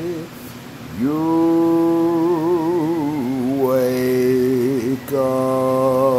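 A man singing long, held notes with vibrato and no clear words, sliding up into the first note about a second in and shifting to a lower note partway through.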